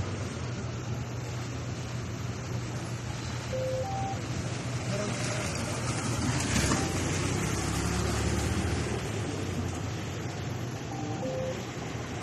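Street traffic noise: a steady low hum of road traffic, with a vehicle swelling louder around the middle.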